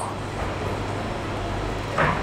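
Steady background hiss with a low, even electrical hum, and no distinct knocks or cuts standing out.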